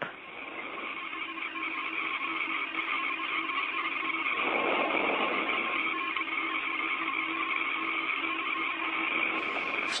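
Hiss of an open space-to-ground radio channel between crew calls: a steady band of static with faint humming tones. It grows slowly louder and swells briefly around the middle.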